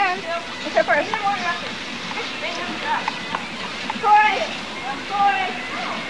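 Children's and teenagers' voices chattering and calling out, several overlapping, over a steady background hiss; one voice is louder about four seconds in.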